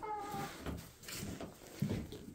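A chicken gives one short, slightly falling call at the start, followed by quieter rustling and a soft knock near the end.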